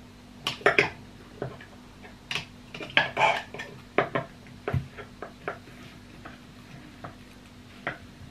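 Irregular clinks and light knocks of a small glass chopper jar and its lid being handled as pieces of cut chilli are dropped into it, some clinks ringing briefly.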